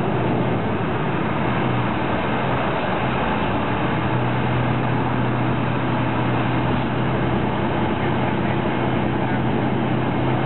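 Passenger train running, heard from inside the carriage: a constant rumble with a steady low hum.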